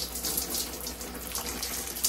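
Bathtub tap running steadily: a constant rush of water.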